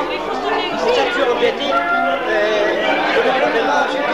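Many people talking at once around a dining table, with a few held musical notes sounding over the chatter in the second half.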